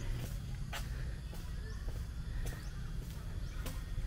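Quiet outdoor ambience: a steady low rumble with a few faint ticks about once a second, and faint bird chirps.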